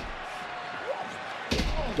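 A wrestler's body hitting the ring canvas with a loud thud about one and a half seconds in, over steady arena crowd noise, after a lighter knock at the start.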